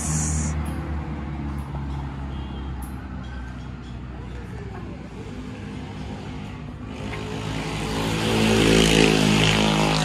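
Road traffic on the highway beside the restaurant: a steady low engine hum, then a motor vehicle, likely a large one, passing and growing loud over the last three seconds.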